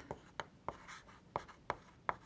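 Chalk writing on a blackboard: faint scratching of chalk strokes with a few sharp taps as the chalk strikes the board.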